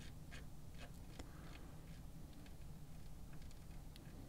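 Faint, scattered ticks and finger rubbing from a hand turning the data encoder knob on a Rossum Assimil8or Eurorack sampler module, over a low steady background hum.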